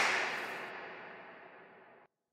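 A sharp crack followed by a hissing tail that fades away over about two seconds, growing duller as it fades.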